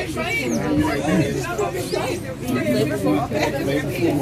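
Several people talking at once, a steady chatter of voices with no clear words and no other sound standing out.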